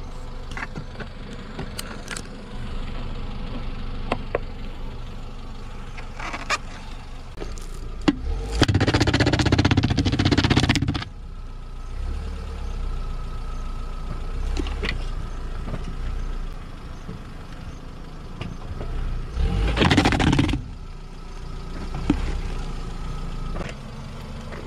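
Kia car's engine running steadily as its tyre presses onto a plastic child's helmet, with scattered clicks. Two loud stretches of noise, about two seconds long some eight seconds in and a shorter one about twenty seconds in, as the tyre bears down on the helmet shell.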